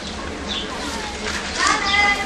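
Indistinct background chatter of people, children's voices among them, with a louder high-pitched call rising near the end.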